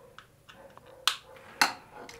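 Faint handling noise from an iPhone held in the hand: a few light ticks and taps, with a sharper tap about a second in.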